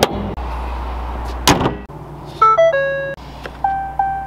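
A pickup truck's hood slammed shut about one and a half seconds in, over a steady low hum. After it comes a short run of electronic chime tones stepping between pitches, and one more tone near the end.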